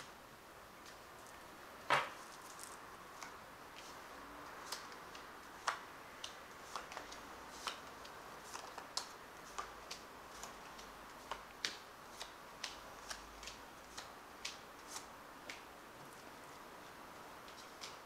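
Playing-size tarot cards being dealt one at a time onto a cloth-covered table: a string of faint light taps and flicks, with a sharper snap about two seconds in. The taps stop a couple of seconds before the end.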